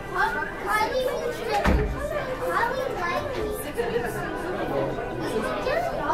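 Indistinct chatter of several people talking, with one thump a little under two seconds in.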